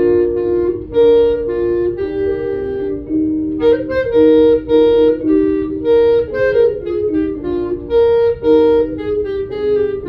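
Unaccompanied clarinet playing a slow solo melody in held notes, moving from one note to the next about every half second to second, mostly in its lower-middle range.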